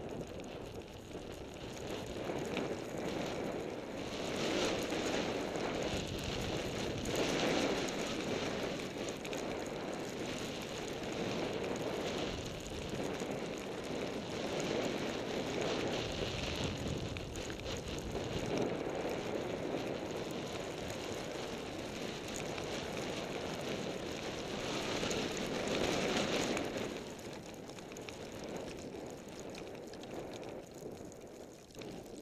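Skis sliding over fresh snow through a series of turns, with wind rushing across the camera microphone; the noise swells and fades every few seconds and eases off near the end.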